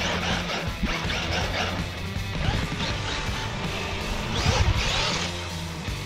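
Background rock music with a steady bass line and loud crashing bursts, one near the start and one about four and a half seconds in.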